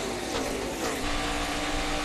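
NASCAR Nationwide stock cars' V8 engines running at racing speed. The pack's note falls in pitch as the cars go by. About a second in, it gives way to one car's engine held at a steady high note, heard from its in-car camera.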